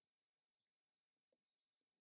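Near silence: the audio is all but muted between spoken instructions.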